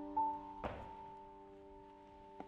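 Soft piano score holding long sustained notes that fade quieter toward the end. About half a second in there is a single thunk, a footstep on a wooden stair.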